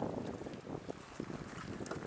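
Wind buffeting the microphone of a camera on a motorcycle's handlebars, a rough irregular rumble with scattered crackles and knocks.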